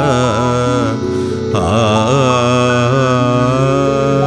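Sikh kirtan music near its close: a long wordless sung phrase with vibrato over steady held accompaniment, with a brief break about a second in.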